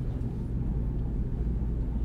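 Steady low rumble with a constant hum, with nothing else sounding: room and recording background noise.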